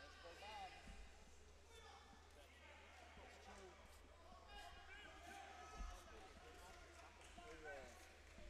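Faint, indistinct voices of people talking at a distance across the hall, over a steady low hum.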